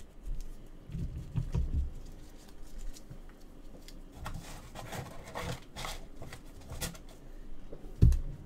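Trading cards being handled and set down on a table: a few soft low thumps about a second in, then light scattered rustling and clicks.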